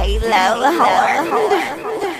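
A person's voice speaking as the hip-hop beat's bass drops out just after the start.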